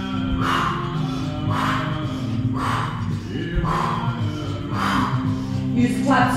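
A song with a steady low drone, with forceful breaths out through the mouth about once a second over it: rhythmic breathing during a Kundalini exercise.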